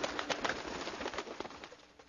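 Wing-flutter sound effect: a dense, rapid flapping of many wings, loudest in the first half, then fading away toward the end.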